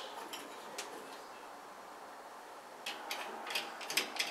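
Faint room hiss, then from about three seconds in a run of small metallic clicks and scrapes as a screwdriver drives a screw into a chrome shower trim faceplate.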